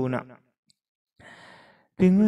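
A spoken phrase trails off, then after a short silence a person breathes out audibly into the microphone, a soft sigh lasting under a second, heard over a video call.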